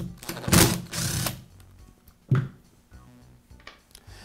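Screwdriver backing out the screw that holds the grounding wire to a Porter Cable router's motor housing: a rapid rattling scrape for about a second, then one short knock about two seconds in.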